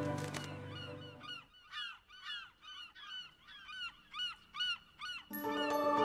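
A bird calling over and over, about ten short calls in quick succession, while background music fades out over the first second or so; the music comes back in suddenly near the end.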